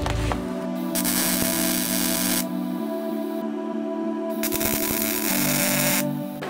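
Background music of slow held chords. Over it come two spells of MIG welding crackle as plug welds are laid on thin steel parts: the first from about a second in for about a second and a half, the second from about four and a half seconds until near the end.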